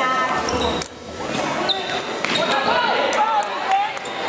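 Basketball bouncing on a hardwood gym floor during play, a series of sharp thuds among the voices of players and spectators echoing in a large hall.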